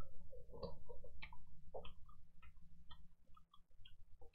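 Close-up eating sounds: a person chewing, with a run of short mouth clicks and smacks, two or three a second, over a low steady hum.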